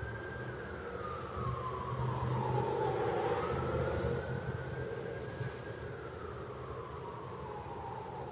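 Distant emergency-vehicle siren wailing, its pitch sliding slowly down and up twice over a low steady hum.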